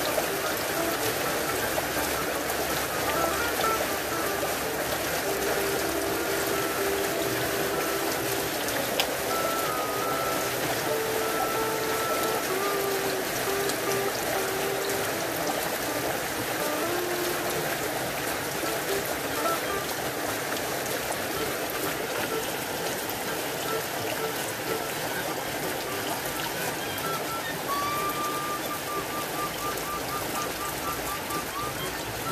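Steady heavy rain, with faint music of held notes in the background.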